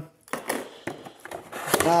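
A cardboard box being cut open with a knife and its lid pulled up: irregular scraping with a few sharp clicks.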